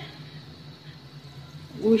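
Quiet pause in a room: a faint, steady low hum with light background noise, and a voice starting again near the end.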